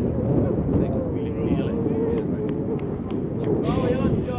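Footballers shouting to each other during a match, over a steady low rumble of outdoor noise, with a louder shout near the end.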